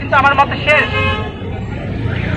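A vehicle horn toots briefly, a steady held tone about a second in, over a low traffic rumble, with a voice speaking just before it.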